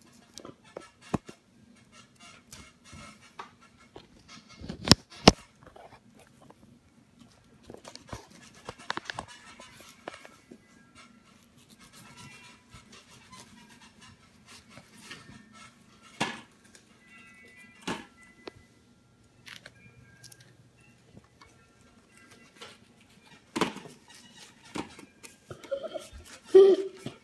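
A kitchen knife cutting through pineapple and knocking on a wooden cutting board: scattered sharp knocks, the loudest two close together about five seconds in, over faint background music.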